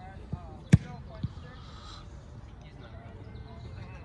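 A punter's foot striking a football: one sharp impact about three quarters of a second in. Two fainter knocks come just before and after it.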